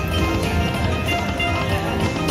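Slot machine's free-games bonus music playing steadily while the reels spin.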